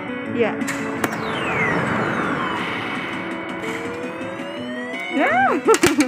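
Electronic game sounds from a coin-operated claw machine: a long falling synthesized sweep, steady electronic tones, then a slow rising tone, with quick up-and-down bleeps and a few clicks near the end.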